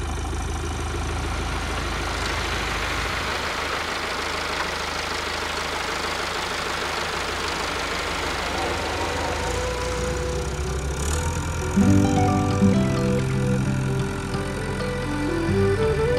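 Tractor engine running steadily under load as it tows a stuck SUV out of the mud on a cable. Background music comes in about ten seconds in and grows louder near the end.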